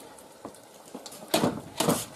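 A white plastic tub handled and tipped over a cooking pot: a faint click, then a few short scraping, rustling noises near the end.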